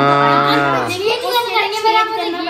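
A long, low moo-like call, its pitch rising and then falling, lasting about a second; a child's voice follows.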